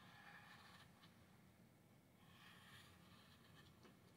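Very faint scratching of a marker tip drawn around the rim of a paper cup on cardstock, in two strokes about two seconds apart; otherwise near silence.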